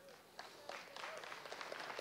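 Scattered clapping from a few people in the congregation. It begins about half a second in and builds slightly, staying faint.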